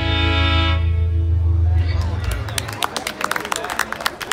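A string band of fiddle, guitars and upright bass holds its final chord, which dies away about a second in while the bass rings on a little longer. Audience clapping starts about two seconds in, with a few voices among it.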